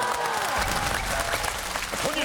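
Studio audience and panel applauding, with the last held note of a woman's a cappella singing fading out in the first half second.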